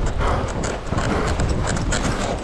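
Skis running through fresh powder, heard from a chest-mounted GoPro: a low wind rumble on the microphone with a rapid, irregular clatter of knocks and rustles.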